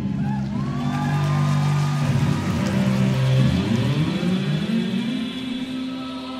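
Electric guitar played through effects: sustained notes that have slid down low hold there, then glide back up in pitch about four to five seconds in, over a hissing wash of noise.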